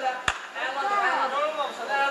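Cage-side voices calling out over an MMA ground exchange. A single sharp smack comes about a quarter second in.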